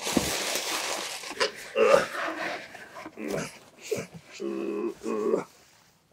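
Brown packing paper and cardboard rustling as an item is pulled out of a shipping box, followed by several short pitched vocal sounds from about one and a half seconds in.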